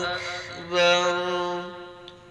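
A young man's solo voice chanting Islamic dhikr (zikir), sung into a handheld karaoke microphone. He holds one long, steady note for about a second, and then the chant fades out near the end.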